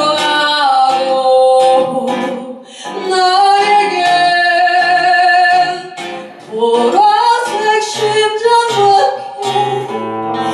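A woman singing with acoustic guitar accompaniment, played live. The voice drops out briefly twice, between phrases.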